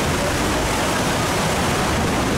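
Steady rush of water from a FlowRider surf simulator, a sheet of water pumped up its slope.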